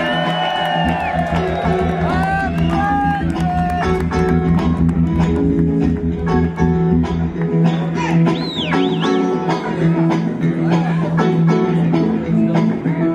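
Live rock band playing the intro of a song: electric guitars, keyboard, bass and drum kit, with a steady drum beat and bass line coming in about a second in.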